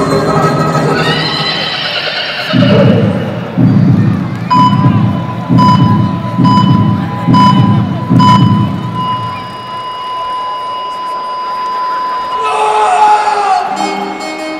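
Heart-monitor sound effect over music: a heartbeat thumping about once a second, each beat with a high beep from the monitor, then the beeping gives way to a long unbroken flatline tone, the sign of the heart stopping. A short, higher sound cuts in near the end.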